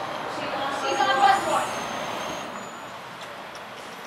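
Van Hool coach bus pulling up and stopping, with a loud burst of pneumatic air hiss about a second in, settling to a quieter idle.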